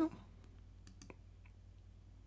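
A few faint computer mouse clicks about a second in, over a low steady hum.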